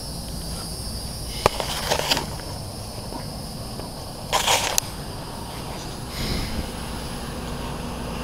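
A steady high-pitched insect chorus, like crickets, with a few short rustles and knocks from the camera being handled and moved. The loudest rustle comes about halfway through.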